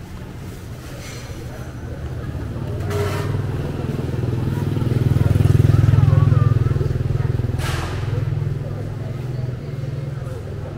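Low engine rumble of a passing motor vehicle. It grows louder to a peak about six seconds in, then fades, with faint voices of passers-by underneath.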